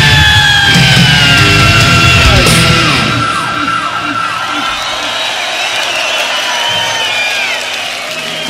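A live heavy metal band ends a song, its final chord ringing under a long high note that slowly slides down. About three seconds in the band drops out, leaving the crowd cheering, yelling and whistling.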